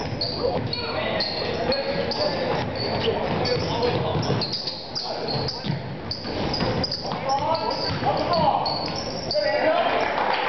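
A basketball bouncing and sneakers squeaking on a hardwood gym floor during play, with many short high squeaks throughout. Voices shout over it, echoing in the large gym.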